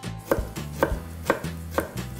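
A knife slicing fresh ginger root on a wooden chopping board, with a sharp knock each time the blade strikes the board, about two cuts a second.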